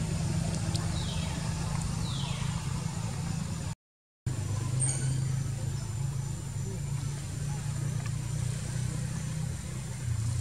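A steady low motor hum, like a vehicle engine idling, with two faint falling whistles about one and two seconds in. The sound cuts out completely for about half a second near four seconds in, then the hum resumes.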